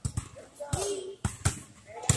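Basketballs bouncing on a hardwood gym floor: sharp bounces in two quick pairs, one near the start and one about a second later.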